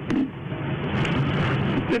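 A brief vocal sound from the man just after the start, then a steady low hum and hiss under a pause in his speech.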